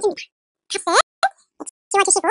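Speech only: a voice speaking Korean in short phrases, with brief pauses between them.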